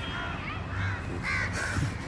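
A crow cawing, a few short calls.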